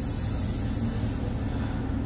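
Air hissing out through the valve of a towing air-helper bag as it is bled down, thinning out, over a steady low hum.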